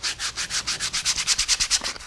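Sandpaper rubbed by hand along the edge of a scrap wood block in rapid back-and-forth strokes, a rhythmic scratchy hiss, smoothing out the rough cut edges.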